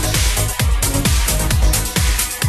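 Electronic dance music in a DJ mix: a steady four-on-the-floor kick drum, a little over two beats a second, under hi-hats and sustained synth lines.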